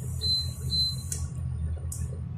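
Two short high beeps from an induction cooktop's control panel as its setting is turned down, over the cooktop's steady low fan hum.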